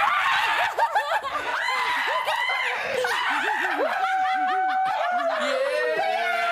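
Several people laughing and squealing with excitement, many voices overlapping, with one longer held squeal about two-thirds of the way through.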